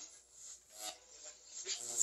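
Ghost-box app sweeping through audio fragments played over a small speaker: short choppy bursts of voice-like sound and hiss, two of them about a second apart.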